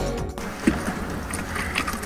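Background music cuts off abruptly, giving way to steady outdoor noise on a fishing boat's deck, with a single knock shortly after.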